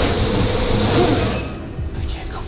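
Horror-trailer score and sound design: a loud, dense wash of noise over a deep low rumble, easing off near the end.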